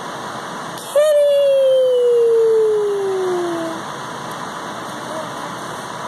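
A toddler's long vocal note about a second in, one held sound sliding steadily down in pitch for nearly three seconds, over a steady rushing noise from an electric fan.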